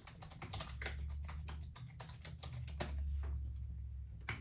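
Typing on a computer keyboard: a quick, uneven run of keystrokes. A low steady hum sits underneath for most of it.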